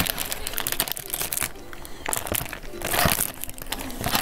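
Plastic snack wrapper on a box of strawberry stick biscuits crinkling and crackling in uneven bursts as it is worked open by hand, with a brief lull about a second and a half in.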